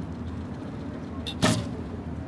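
A recurve bow being shot: one sharp snap of the string on release, about one and a half seconds in, over a steady low background noise.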